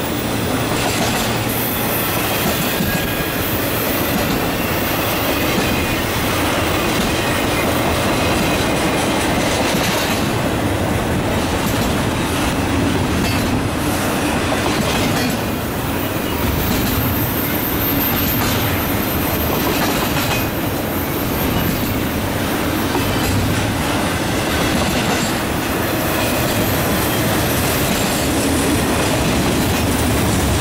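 A long freight train's double-stack container well cars rolling past close by. The steel wheels make a steady, loud noise on the rail that does not let up.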